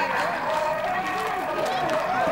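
Voices of a walking crowd: several people talking at once, with no single voice standing out.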